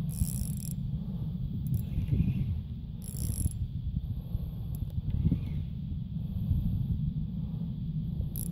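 Spinning reel being cranked steadily, its gears and rotor whirring as line is wound in, under a steady low rumble, with short hissy bursts near the start and about three seconds in.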